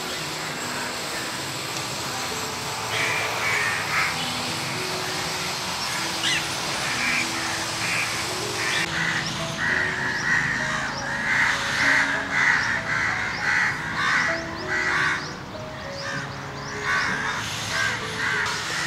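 Crows cawing repeatedly over soft background music of slow held notes; the cawing starts about three seconds in and is thickest in the second half.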